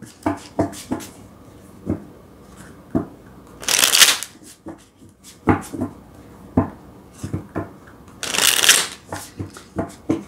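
A deck of tarot cards shuffled by hand: scattered soft taps and slides of cards, with two louder rushes of card noise, about four seconds in and again near the end.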